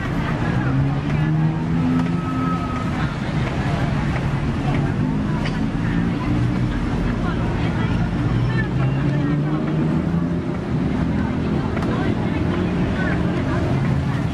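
Busy street-market ambience: many people talking over a steady low rumble.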